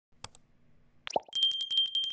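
Subscribe-button animation sound effects: two faint mouse clicks, a short plop about a second in, then a high notification-bell ding ringing in rapid strokes.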